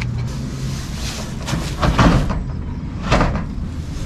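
A large cloth blanket rustling as it is dragged out of a packed storage unit, with two loud swishes, about two and three seconds in, over a low steady rumble.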